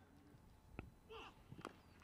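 Near silence, with a couple of faint ticks and a brief faint voice about a second in.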